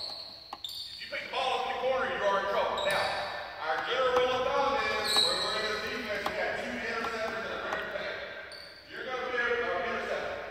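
Basketball bouncing on a hardwood gym floor amid talking voices, echoing in the large hall.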